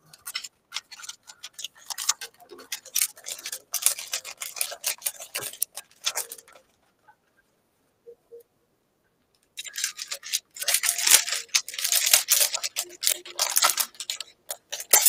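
Plastic wrapper of a Magic: The Gathering booster pack crinkling and crackling as it is handled and torn open by hand. The crackling comes in two spells, with a pause of about three seconds in the middle.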